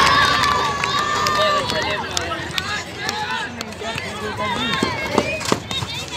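Sounds of an outdoor basketball game: spectators and players calling out in scattered voices while players run on the court. One call is held long in the first second or so, and a couple of sharp knocks come about five seconds in.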